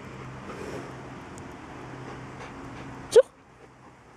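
A Bernese mountain dog gives one short, sharp bark with a rising pitch about three seconds in, excited by a treat held out in front of it. A steady low hum runs underneath.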